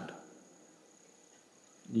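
A man's voice trails off at the start, leaving faint, steady high-pitched chirring of crickets over low background hiss.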